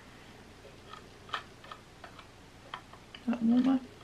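A few faint, irregularly spaced clicks from the control dial on the head of a BenQ Genie desk lamp as it is turned and pressed to change the light's colour temperature. A short hummed voice sound comes near the end.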